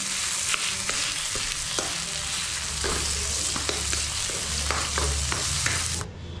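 Chopped onions and tomatoes sizzling in hot oil in a wok, with a wooden spatula stirring and scraping against the pan in irregular knocks.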